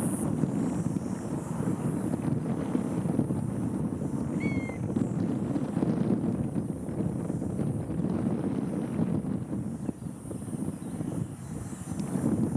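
Wind rumbling on the microphone, a steady low noise, with one short bird call, a chirp that rises and then levels off, about four and a half seconds in.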